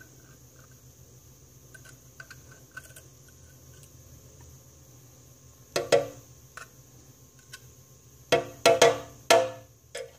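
Metal tweezers handling ants: faint light clicks of the tips for the first few seconds, then a sharp tap about six seconds in and a quick run of four loud taps near the end, each with a short hollow ring like a wood block, as the tweezers strike a hard surface.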